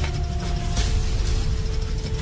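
Dark documentary underscore: sustained low notes over a dense rumble with clanking, mechanical-sounding textures. The held notes change a little under a second in.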